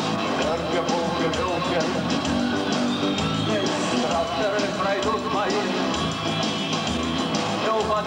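A rock band playing live in a large hall: electric guitars over a steady drum beat, running on without a break.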